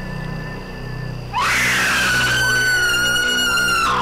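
A loud, high-pitched scream breaks in about a second and a half in, rising at first and then held for about two and a half seconds before cutting off. It sounds over a low, droning horror score.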